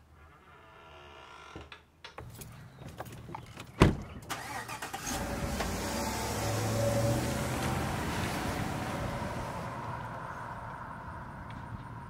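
A single loud thump about four seconds in, then a pickup truck drives off. Its engine and tyre noise swells to a peak a few seconds later and then slowly fades away.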